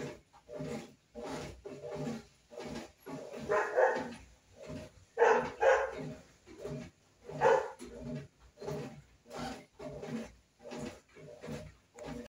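A dog barking over and over at an even pace, about two barks a second, with a few louder barks around the middle.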